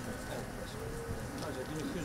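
A dove cooing, a low steady call about a second in, over the murmur of a crowd.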